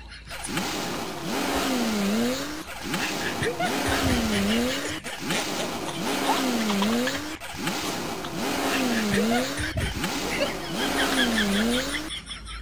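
A looped sound effect that repeats about every two and a half seconds, each time with a pitch that dips and rises again over a busy, noisy layer.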